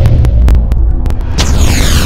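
Logo-intro sound effect: a loud, deep bass boom hits suddenly at the start and keeps sounding, with a few sharp clicks over it. A bright sweep slides downward in pitch about one and a half seconds in.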